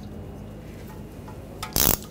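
Low steady room tone with a couple of faint clicks, then near the end a short, loud burst of ratchet clicking as a socket runs down the ABS wheel speed sensor's retaining bolt.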